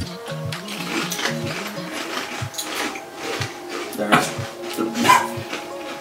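Light background music with a steady beat, with a few crisp crunches of kettle-style potato chips being bitten and chewed.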